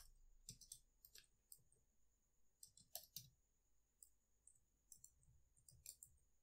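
Faint, scattered keystrokes on a computer keyboard, a handful of separate clicks at an irregular, unhurried pace.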